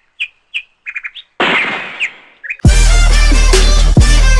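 Small birds chirping in short calls, with a brief rush of noise about a second and a half in; just before three seconds, loud electronic music with a strong beat cuts in.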